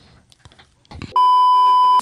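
A loud, steady electronic beep at one high pitch, starting a little past halfway and cutting off sharply at the end: the tone of a censor bleep. Faint clicks come before it.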